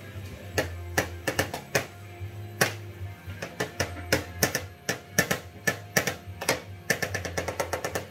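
Spoons tapped and banged irregularly on a plastic high-chair tray: a run of sharp clicks and knocks, coming faster near the end, over background music.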